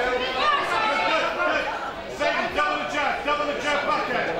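Several voices talking and calling out at once, none clear enough to make out, in a large hall.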